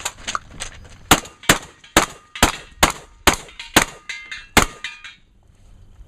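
A fast string of about nine gunshots, a little under half a second apart, during a multigun stage, with metal ringing after the last few shots as steel targets are hit.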